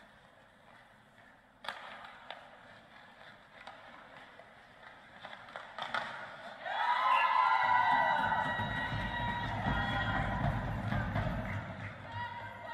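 Ice hockey skates scraping on the ice and a stick clicking on the puck during a shootout attempt, with a louder hit near six seconds in as the shot is taken. From about seven seconds in, loud shouting and cheering break out, with music and a deep rumble under them, fading near the end.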